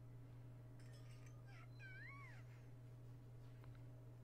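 Near silence: room tone with a steady low hum, and a faint, brief wavering high tone about two seconds in.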